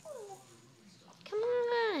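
A baby's short falling coo near the start, followed about a second later by a long, high, drawn-out sing-song vocal sound that drops in pitch at its end.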